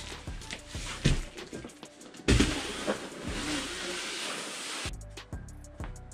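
Background music with a steady beat, over the handling of a large, empty cardboard box: knocks about a second in and again just after two seconds, then a rustling scrape of cardboard that stops about five seconds in.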